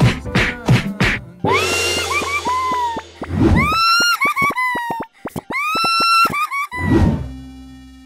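Cartoon comedy sound effects over music. It starts with a few quick knocks, then a whoosh. Then come high whistle-like tones that slide up and hold, broken by quick clicks, twice, with a falling tone near the end.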